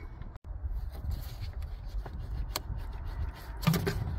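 The plastic and rubber air intake tube is worked loose and pulled off the throttle body: rubbing and scraping handling noise with a few sharp clicks, over a low rumble.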